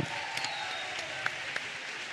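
Light, scattered audience applause: a steady patter of clapping.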